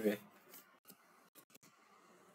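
A few faint computer keyboard keystrokes, light separate taps, as a word is typed.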